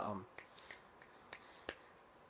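A handful of faint, short clicks spread through the pause, the sharpest one near the end.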